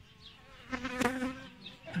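Honeybees buzzing around a hive entrance; the hum swells louder for about half a second in the middle, as a bee flies close.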